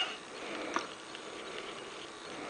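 Quiet room hiss with one faint, short click about three quarters of a second in, from a hand handling a handheld device.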